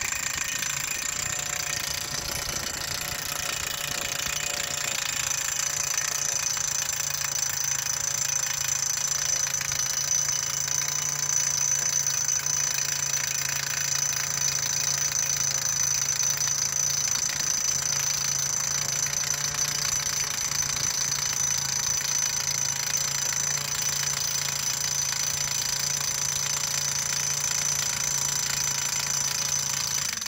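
Messer JH-70 petrol post driver running continuously, its engine and rapid hammer blows driving a steel post into the ground.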